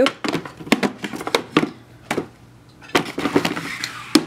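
Clear acrylic storage drawers being slid out and handled: a run of sharp, irregular plastic clacks and knocks for about two seconds, then a softer sliding sound with a few more clicks near the end.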